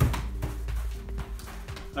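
Background music with held notes and a steady beat.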